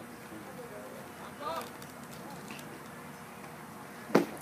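Faint, steady outdoor ambience at a baseball field, with one short distant voice calling out about a second and a half in.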